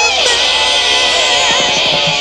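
Hard rock demo recording: a wavering high note held over a sustained chord, with a fast run of low muted notes starting near the end.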